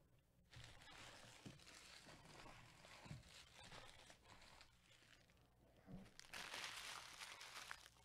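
Faint crinkling and rustling of packaging being handled, starting about half a second in and loudest for a second or so near the end.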